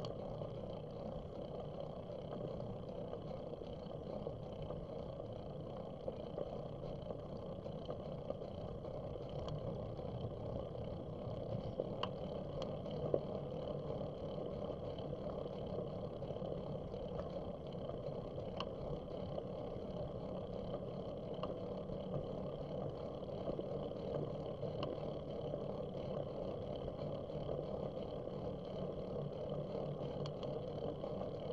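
Steady wind and tyre noise from a moving bicycle, heard through a bike-mounted camera's microphone, with a few faint clicks.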